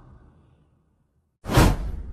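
The last of a heavy werewolf-breath sound effect fading away, then a brief silence, then a sudden loud transition whoosh about one and a half seconds in.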